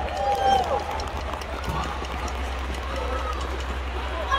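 Shouted calls and voices echoing in a large arena, two or three calls sliding down in pitch near the start and another around three seconds in, over a steady low hum.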